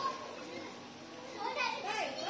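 Children's voices calling out while playing, loudest at the start and again about one and a half seconds in.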